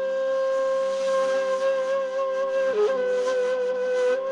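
A flute-like wind instrument holding one long note over a steady low drone, dipping briefly to a lower note just before three seconds in and returning, with breath noise audible.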